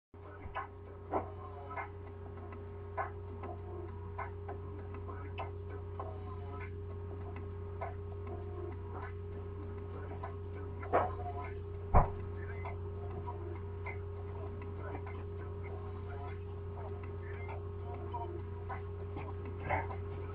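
A steady low electrical hum with faint, distant voices under it and a few scattered knocks, the sharpest about twelve seconds in.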